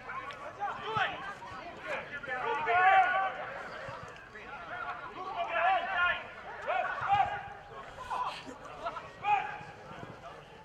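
Men's voices calling out in bursts around a football pitch during open play, from players and spectators.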